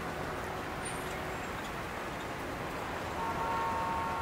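Steady outdoor town ambience: a low, even hum of distant traffic. A faint held tone joins it about three seconds in and lasts about a second.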